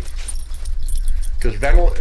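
A steady low rumble on a handheld camera's microphone, typical of outdoor wind buffeting it. Faint light clicks sound during a pause before a man's voice comes back near the end.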